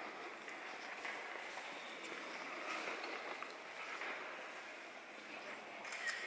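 Faint ambience of a large church interior: a soft, even wash of room noise with a low murmur of distant visitors' voices.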